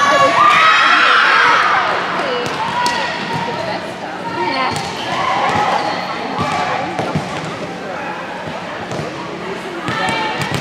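Volleyball rally on a hardwood gym court: the ball is struck and bounces in sharp smacks, while several girls' voices call and shout, loudest in the first couple of seconds.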